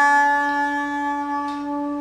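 A Chalimeau, a wooden single-reed woodwind between clarinet and shawm, holding one long steady note that ends near the close.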